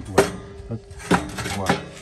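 A firebrick clanking against the metal firebox and grate of a Landmann Vinson 500 offset smoker: one sharp knock, then a metallic ring that hangs on for over a second.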